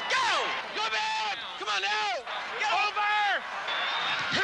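A man's voice shouting four loud calls about a second apart, each rising and then falling in pitch, from football players set at the line of scrimmage.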